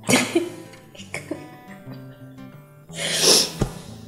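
A woman's tearful breathing and sniffs over soft acoustic guitar music: short breathy bursts at the start and about a second in, and a louder, longer breathy burst about three seconds in.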